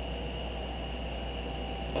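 Steady background hiss with a low hum and a faint high whine: room tone in a pause between words.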